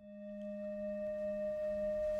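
A sustained ringing musical tone fading in, with a wavering lower hum beneath and fainter higher overtones.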